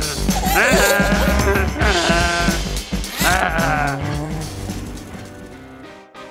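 Wordless, wavering cartoon character vocal sounds, three in the first four seconds, over background music that thins out near the end.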